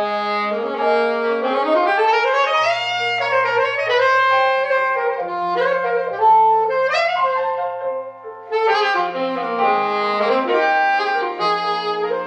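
Alto saxophone playing a solo with quick runs and upward slides over piano accompaniment, with a short breath between phrases about eight seconds in.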